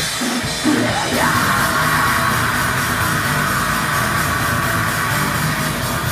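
A heavy rock band playing live: electric guitar, bass and drum kit come in together less than a second in, joined by a vocalist, and play on loud and dense.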